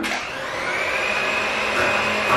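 Electric hand mixer starting up on low speed to whip cream cheese. Its motor whine rises at the start, then holds steady.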